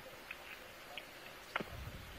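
Low, steady hiss of the dive's audio feed between remarks, with a few faint ticks and a short click about one and a half seconds in.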